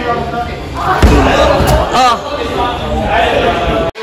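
Voices talking and calling out, with one heavy thud about a second in, the loudest sound: a climber dropping off the slab onto the padded crash mat.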